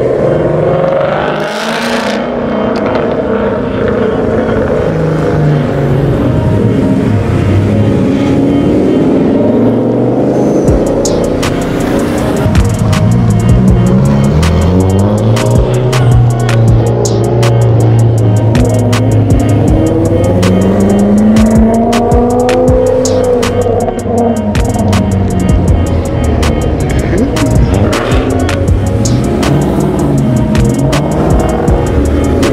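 Car engines revving and accelerating as cars, among them Ford Mustangs, pull away one after another, the pitch rising and falling with each one. Background music with a beat comes in about ten seconds in and runs under the engines.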